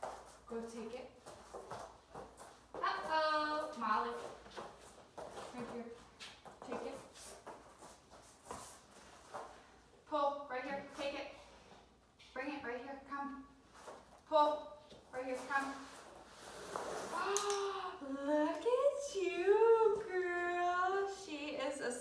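A woman's voice in short, high, sing-song phrases coaxing a dog, with soft knocks and rustles in the pauses between.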